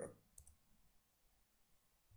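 Near silence, with one faint short click about half a second in.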